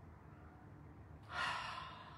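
A woman's deep sigh: one breathy exhale about halfway through, swelling then fading over about half a second, over a faint low room hum.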